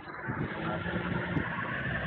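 Steady street traffic noise picked up by a video-call participant's microphone, with a low vehicle rumble. It sounds muffled and narrow, as call audio does, with no high end.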